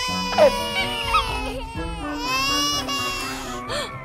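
Voice-acted cartoon baby piglet crying in long, wavering wails over light background music, with one strong rising-and-falling wail about two seconds in.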